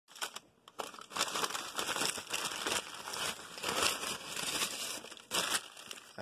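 Brown paper takeaway bag rustling and crinkling as it is handled and opened, with irregular crackling strokes throughout.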